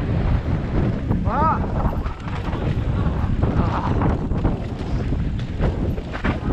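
Mountain bike riding down a dirt forest singletrack: wind buffets the microphone over a steady rumble of tyres on the trail, with frequent knocks and rattles from bumps. About a second and a half in, a brief pitched sound rises and falls.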